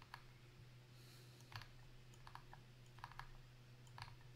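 Faint, scattered clicks of a computer's controls as a webpage is scrolled, about seven in all, some in quick pairs, over a low steady hum.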